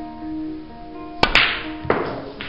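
Snooker cue striking the cue ball with a sharp click a little over a second in, then a second sharp click about two-thirds of a second later as the cue ball hits an object ball in the line-up. Background music with held tones plays underneath.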